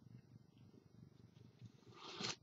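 Near silence: room tone with a faint, fluttering low rumble.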